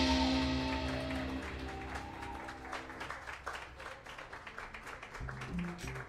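A jazz band's closing chord: saxophones and upright bass hold their final notes over a dying cymbal crash, fading out by about three seconds in. A small audience's scattered clapping grows as the music dies away.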